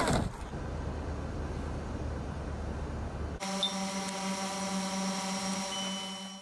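A low rumbling noise, then from about three and a half seconds in a hovering quadcopter drone: a steady, even, many-toned propeller whine.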